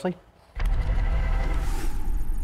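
TV news segment-transition sting: about half a second in, a deep bass swell comes in with a whooshing wash that rises in pitch and stays loud.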